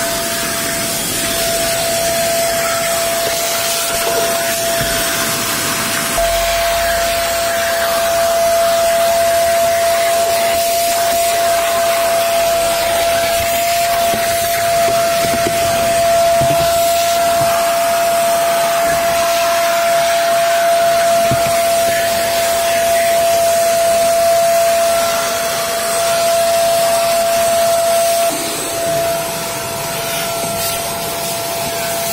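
Vacuum cleaner sucking through a corrugated hose while cleaning car floor mats: a loud, steady rush of air with a steady whine, dipping briefly near the end.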